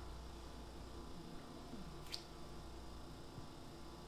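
Faint, wet working sounds of a liposuction cannula being pushed back and forth through the fat under the skin of the flank, over a steady low hum, with one short sharp squeak about two seconds in.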